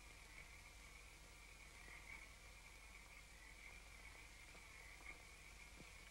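Near silence: faint hiss of an old film soundtrack, with a thin steady high tone.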